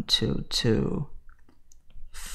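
A man's voice reading out a decimal number, then a short pause.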